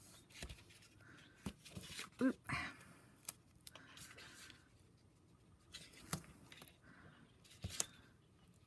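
Adhesive tape being pulled off its roll and laid along the edges of cardstock, with faint intermittent rustling, peeling and small clicks as the card is handled and pressed down.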